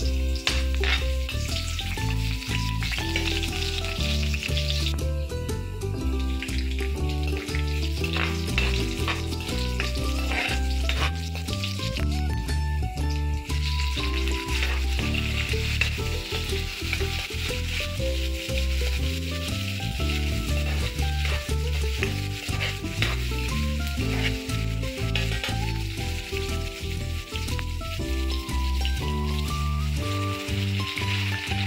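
Chopped garlic, onion and tomato sizzling in hot oil in an aluminium wok, with a metal spoon stirring and scraping against the pan in frequent short clicks.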